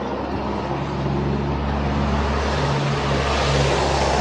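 A jeep's engine running as it drives along a wet road, with a steady low hum that grows gradually louder, over the hiss of tyres on the wet surface.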